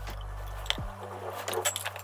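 Scattered light clinks and taps of glass boiling tubes and a plastic syringe being handled in a test-tube rack, coming in quick succession in the second second, over a faint low steady hum.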